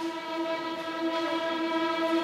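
A school string orchestra holds one long, steady note that grows fuller and slowly louder.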